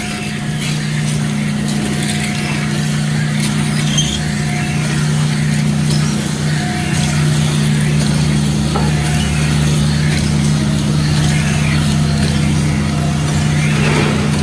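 50-horsepower CM H-50 hybrid dual-shaft shredder running with its cutting chamber nearly empty: a steady low hum from the turning knife shafts, with a few light clicks from leftover sandpaper scraps.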